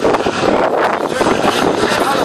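Racing cars' engines running as they come round the circuit, a steady noisy mix with wind on the microphone.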